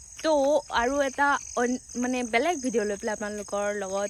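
A woman talking over a steady, high-pitched chorus of crickets.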